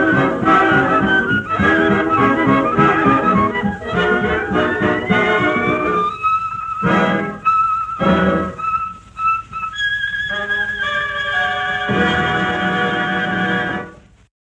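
1950s boogie-woogie dance-band recording with brass playing the close of a tune: a rising glide about four seconds in, a few short separate chords, then a long held final chord.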